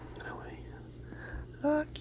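Soft whispering, then near the end a man's voice starts softly calling a child's name in a drawn-out, sing-song tone.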